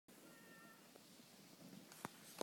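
Near silence: a faint steady hiss, with a faint, brief, steady high tone near the start.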